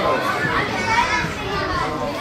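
Children's voices shouting and calling out during a youth football match, several high voices overlapping without a break.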